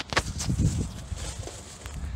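Rustling and a few sharp knocks from the camera being handled and moved about under the car.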